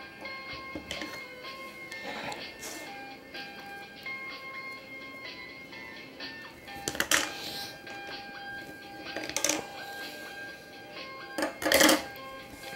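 Light background music with a simple melody of held notes. Short rustling handling noises from hands working Play-Doh into a plastic mold come about seven seconds in, again two seconds later, and loudest just before the end.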